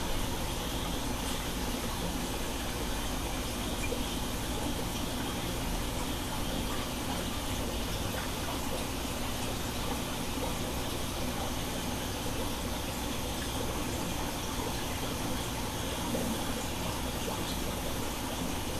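Steady rushing of running water, unbroken and even, with a faint low hum underneath.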